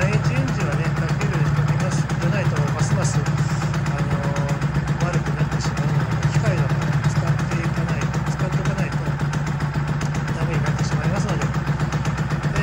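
Honda NSR250R SP's two-stroke V-twin idling steadily, with no revving. The owner says the engine's revs won't climb properly and the bike is not yet in a state to be ridden.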